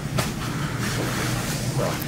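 Steady low hum of room background noise, with a brief click shortly after the start.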